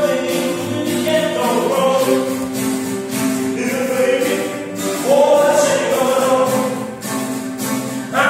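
Two acoustic guitars played live, with singing in sung phrases over the sustained guitar notes.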